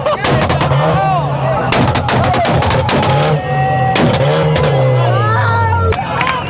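Modified turbocharged car engine being revved hard, its full aftermarket exhaust firing a rapid string of loud pops and bangs. The revs drop near the end.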